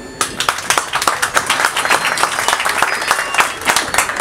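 Audience applauding: many hands clapping in a dense, irregular patter that starts a moment in and stays loud throughout.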